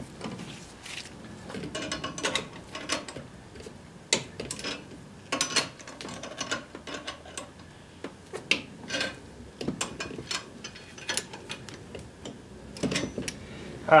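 Irregular metallic clicks, scrapes and rattles of a wrench working a brake line fitting at the master cylinder, ending with a sharp clack near the end as the wrench is set down.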